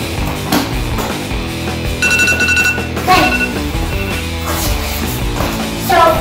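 Rock background music, with an electronic timer beeping about two seconds in: a rapid beeping for about a second, then two short beeps, marking the end of the exercise interval.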